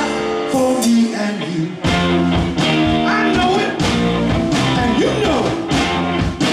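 Live rock-and-roll band playing: electric guitars, electric bass and drum kit. About a second in the bass and drums drop out briefly, then the full band comes back in with the drums.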